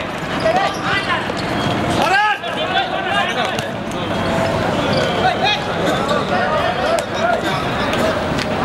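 Men shouting and calling out on the pitch, with the thuds of a football being kicked and bouncing on the hard court. One louder shout comes about two seconds in.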